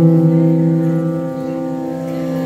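Instrumental background music: one note is sounded at the start and held as a steady chord of tones that slowly fades.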